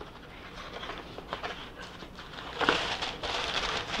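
Reynolds Cut-Rite wax paper being pulled off its roll in the cardboard dispenser box: a few soft clicks of the box being handled, then a light papery rustle starting about two-thirds of the way in as the sheet comes off.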